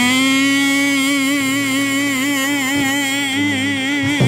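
A man singing one long held high note in a gospel refrain, swooping up into it at the start and holding it with a slight vibrato for about four seconds.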